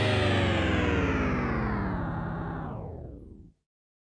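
Closing theme music's final chord, held and slowly dying away, then cutting to silence about three and a half seconds in.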